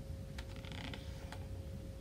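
Thick, stiff pages of a shaped picture book being turned by hand: a quiet creak with a couple of faint clicks.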